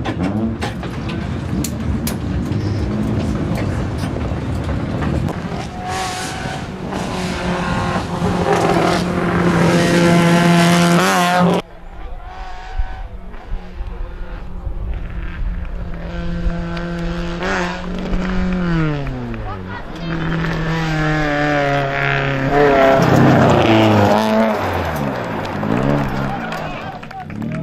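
Fiat Palio rally car engine revving hard and changing gear again and again, its pitch climbing and then dropping at each shift. The sound breaks off abruptly about halfway through and picks up again.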